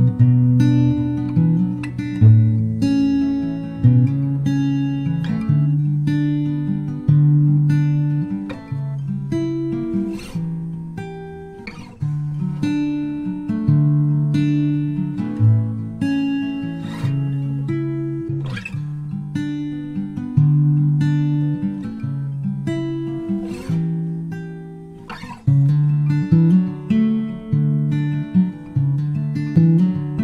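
Acoustic guitar folk instrumental: plucked notes ringing and fading one after another, with a few sharp strummed chords now and then.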